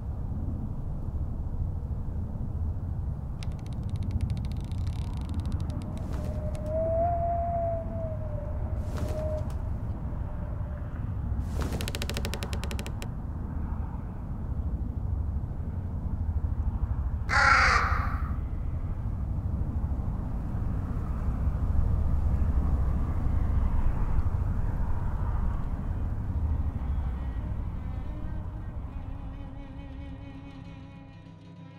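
Crows cawing, with one loud caw a little past the middle and fainter calls and rattles earlier, over a low steady rumble.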